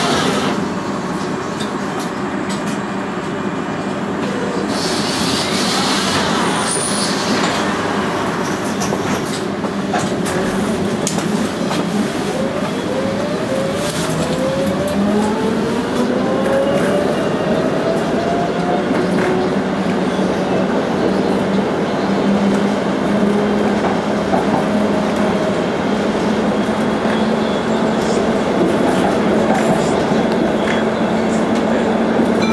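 Electric tram pulling away from a stop and getting up to speed, heard inside the car: a rising whine from its traction motors about halfway through, then steady running noise from the wheels on the rails with a held motor tone.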